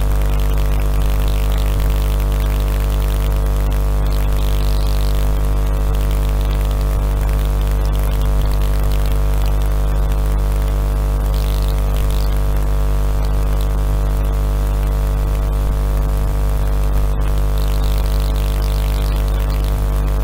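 Steady electrical mains hum and buzz: a constant drone with many even overtones that never changes pitch.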